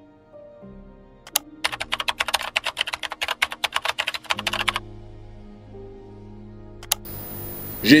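A sound effect of rapid keyboard typing, a quick run of clicks from about a second and a half in to nearly five seconds, over a short music sting of held synthesizer notes. A man's voice starts right at the end.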